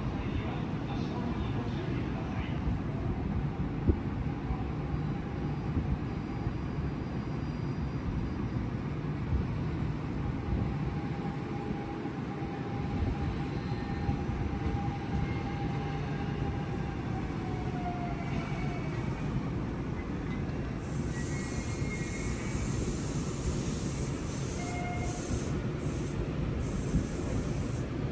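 Electric train running with a steady rumble of wheels on rails. A faint whine drops in pitch about two thirds of the way through.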